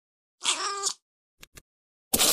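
A cat's meow, one call of about half a second, followed by two short clicks.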